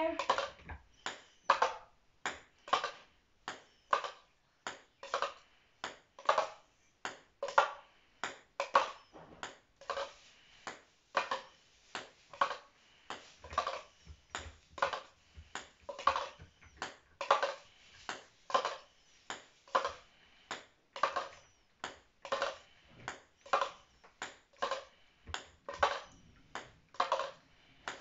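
A ping pong ball bouncing repeatedly in a hand-held cup, making light taps in a steady rhythm of roughly two a second.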